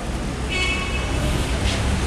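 Downtown street traffic: a steady low rumble, with a short high-pitched horn beep about half a second in.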